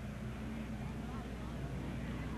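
A pack of full-fendered dirt-track stock cars running slowly in formation on the pace lap, a steady engine drone that swells slightly as they pass, with faint voices in the background.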